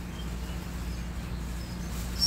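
Steady low hum under quiet room tone, with no distinct event.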